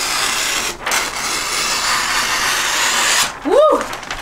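Scissors gliding through wrapping paper in one long, steady cut, with a brief break about three-quarters of a second in, stopping a little after three seconds. Then a short voice sound from a person that rises and falls in pitch.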